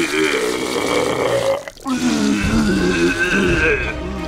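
A cartoon character's voiced vomiting sound effect: long drawn-out retching heaves, broken by a brief gap a little under two seconds in.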